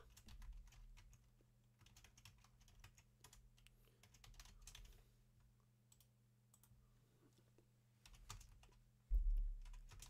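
Computer keyboard typing: faint, irregular key clicks as a terminal command is entered, over a steady low electrical hum. A brief low thump comes about nine seconds in.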